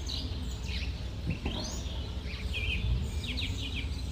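Small birds chirping, a string of short high calls, some sliding up or down in pitch, over a steady low rumble.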